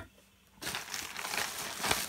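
Rustling, crinkling handling noise as raw chicken legs are picked up and shifted on the plate, starting about half a second in and ending with a low bump.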